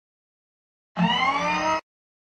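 Silence, then about a second in a short synthetic intro sound effect: several tones sweeping upward together over a steady low hum, lasting under a second and cutting off suddenly.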